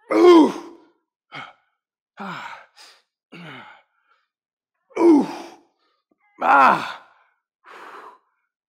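A man's effortful sighs and groans from the strain of an ab exercise: three loud exhales falling in pitch, at the start, about five seconds in and about six and a half seconds in, with quieter breaths between them.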